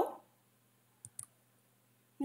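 Two quick clicks of a computer mouse about a second in, close together, advancing a slide.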